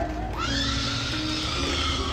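A small child screaming in one long, high, held wail that rises in pitch about half a second in, over background music.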